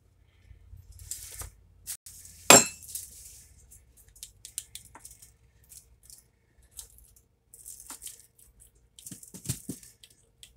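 A pizza cutter wheel rolling and cutting through a baked cheese pizza on a foil-lined metal baking tray, with one sharp clink of metal about two and a half seconds in and scattered lighter clicks and scrapes.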